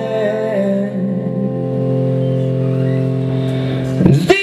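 Live rock band holding a sustained chord, with a sung line wavering and trailing off in the first second.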